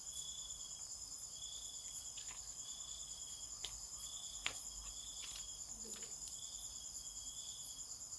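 Insects chirping steadily: a continuous high trill, with a lower chirp repeating about once a second. A few faint sharp clicks fall among them.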